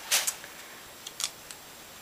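A small folded slip of paper rustling as it is unfolded by hand: a short rustle just after the start, then two or three faint ticks about a second in.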